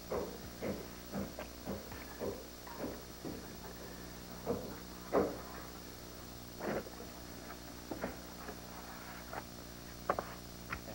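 Faint hammer knocks of work on a foam-core insulated wall panel, about two a second for the first few seconds, then scattered single knocks, over a steady electrical hum.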